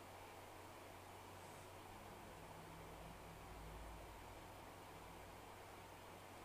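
Near silence: faint steady hiss of room tone, with a faint low rumble swelling briefly in the middle.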